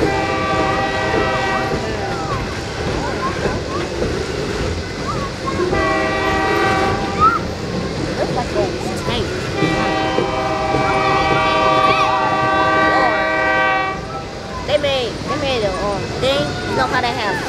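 Loaded freight flatcars rolling past with steady wheel and rail noise, while a locomotive air horn sounds three times as a steady chord: a blast at the start, a short one about six seconds in, and a long one of about four seconds starting about ten seconds in. Voices can be heard at times, most clearly near the end.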